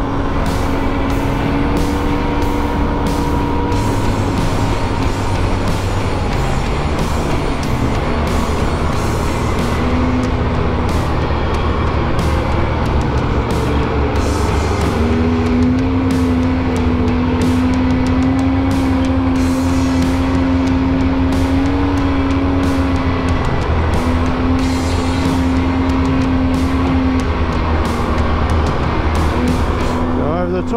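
Polaris Sportsman 700 Twin quad's twin-cylinder engine running under way at a fairly steady pitch that shifts a few times, with tyre and track noise. Background music plays over it.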